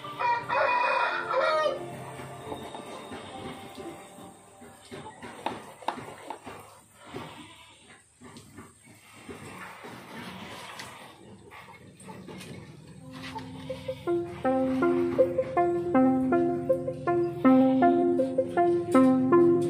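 A rooster crows once, loud, lasting just under two seconds at the start. Scattered light clicks and rattles follow, and from about 14 seconds in a rhythmic background melody of plucked-sounding notes plays.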